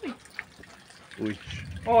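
Low rumble of distant thunder building in the second half, heard under short spoken exclamations.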